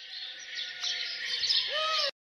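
A flock of small birds chirping, a sound effect that grows louder, with a short rising note near the end.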